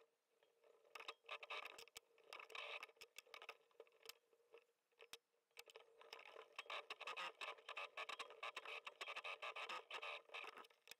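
Faint rustling and scraping of a leather seat cover being handled and fed at an industrial sewing machine, with scattered light clicks that grow denser over the last few seconds, over a faint steady hum.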